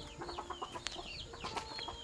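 Rural village ambience: small birds chirping over and over in short, high, falling notes, with chickens clucking underneath.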